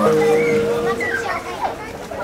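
Children's voices chattering over background music; a held note in the music ends about one and a half seconds in.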